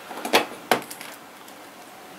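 A short noise and a sharp click within the first second, small handling sounds, then quiet room tone.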